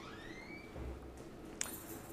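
Quiet room tone with a faint, short rising squeak in the first second and a soft click near the end.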